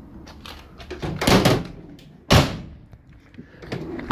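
Vauxhall Vivaro panel van's cargo doors being shut: a drawn-out close about a second in, then a sharp slam a second later.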